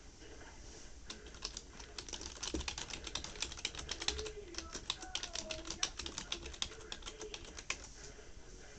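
Quick, irregular typing on a computer keyboard, many key clicks a second, starting about a second in.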